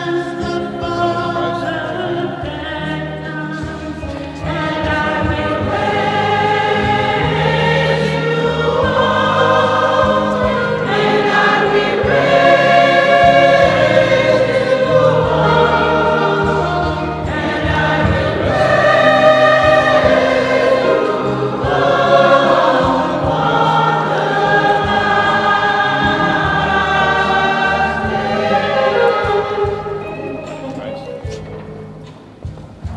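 Church choir singing a hymn over steady, sustained low accompanying notes, getting somewhat louder about five seconds in.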